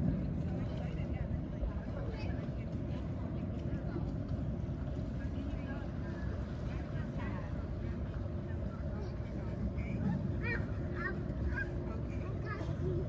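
Outdoor street ambience: a steady low mechanical rumble with a faint hum, and the voices of people nearby, clearer and higher-pitched near the end.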